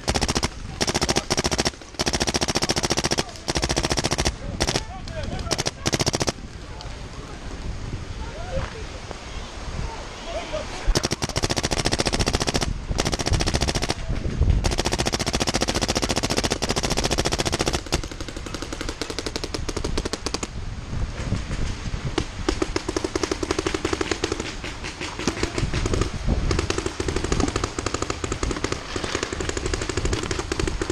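Paintball markers firing in rapid strings of shots: loud bursts broken by short pauses for the first few seconds, then near-continuous fire for the rest.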